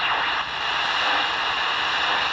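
Steady static hiss from a Tecsun R9012 portable shortwave receiver's speaker, tuned to the 80-meter amateur band between transmissions, with no voice coming through.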